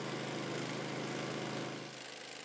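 Small portable generator engine running steadily with an even hum, easing off slightly near the end.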